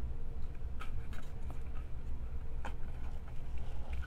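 A few faint taps and scrapes of a card panel being slid into a paper box, over a steady low hum.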